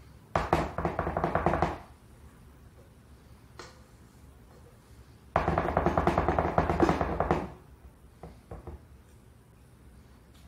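A spatula scraping meringue out of a stainless steel mixing bowl in two short bursts of rapid, chattering scrapes, the metal bowl ringing a little. A few light taps follow.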